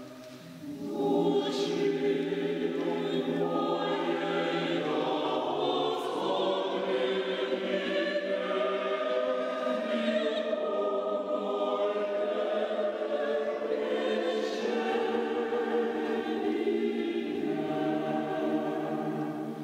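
Mixed choir of men's and women's voices singing unaccompanied. After a brief pause at the very start, the choir comes in about a second in and sings on in long, sustained phrases.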